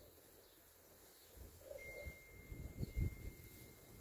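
Faint low rumbling of distant thunder, swelling about a second and a half in and peaking near the end. A thin, steady high tone joins about two seconds in.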